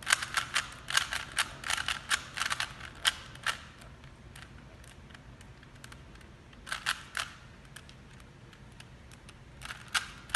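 Plastic Rubik's cube layers being turned by hand, clicking and clacking as they snap round. There is a fast run of turns for the first three and a half seconds or so, then a pause, a short cluster of turns about seven seconds in, and a few more near the end.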